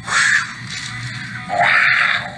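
A tiger's roar from the animation's soundtrack, in two bursts: a short one at the start and a longer one about one and a half seconds in.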